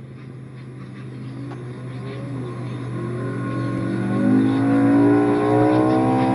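A 1964 Ford Fairlane land-speed race car's big-block Ford V8, a 429 bored out to 557 cubic inches, accelerating away. The engine note rises steadily in pitch and grows louder over the first four seconds or so, then holds.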